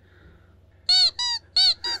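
A man's high, squeaky falsetto whimper: four short whines starting about a second in, each rising and then falling in pitch, put on as cute pleading.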